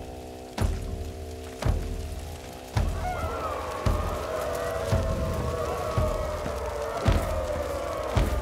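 Ritual film music: a deep drum struck slowly and evenly, about once a second. A droning chord sounds with it at first, and about three seconds in a wavering chanting voice takes over above the beat.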